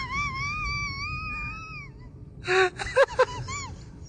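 A high-pitched voice held in one long, slightly wavering wail for about two seconds, then after a short pause a few brief vocal sounds without words.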